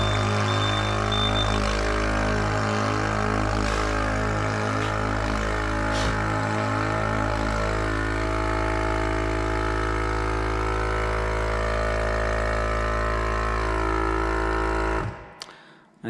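Clad Boy CB4 vacuum lifter's vacuum pumps running steadily as they draw suction on the panel, with the acoustic warner sounding while the vacuum builds. About seven seconds in, the sound settles as the vacuum reaches the safe-to-lift level. The pumps wind down and stop about a second before the end.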